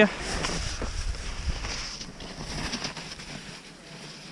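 Wind rumbling on the microphone, with the hiss and scrape of skis on snow.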